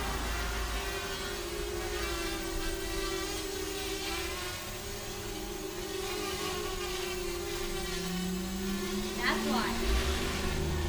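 Small racing quadcopter's brushless motors spinning, a steady whine whose pitch wavers slightly. About nine seconds in, a quick rising whine as the motors speed up.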